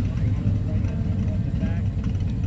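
A vehicle engine idling steadily with a deep, even low rumble.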